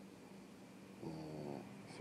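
A man's drawn-out hesitation sound, a single voiced "uh", about a second in. It sits over faint room tone with a steady low hum.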